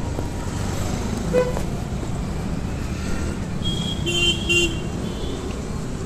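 Road traffic running past, a steady rumble of engines and tyres, with short horn toots; the clearest is a pair of high beeps about four seconds in.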